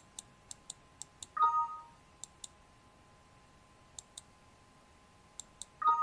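Computer mouse button clicking in quick press-and-release pairs, over and over. A short two-note computer alert chime sounds about a second and a half in and again near the end, the signal that the search has reached the end of the document and found no more occurrences.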